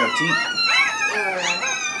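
Rottweiler puppy crying in a string of about three high-pitched, drawn-out whines that rise and fall, while its face is held in an anesthesia mask as the anesthetic gas is started.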